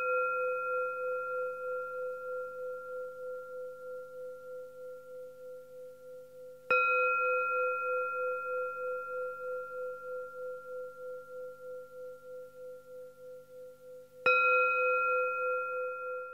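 Buddhist bowl bell struck twice, about seven and a half seconds apart. Each stroke rings out in a long, slowly fading tone that wavers in loudness, and the ring of an earlier stroke is still dying away at the start.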